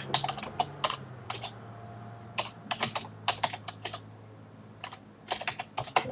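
Typing on a computer keyboard: quick runs of key clicks separated by short pauses, with a longer lull a little past the middle. A low steady hum sits underneath.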